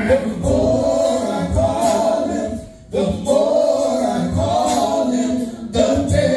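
Male gospel vocal group singing held notes in harmony through handheld microphones and a PA, with a short break a little before halfway.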